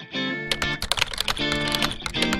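Rapid computer-keyboard typing clicks over guitar background music, the keystrokes starting about half a second in.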